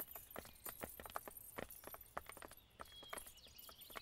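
Faint, irregular light clicks and taps, a few a second, with a brief high chirp about three seconds in.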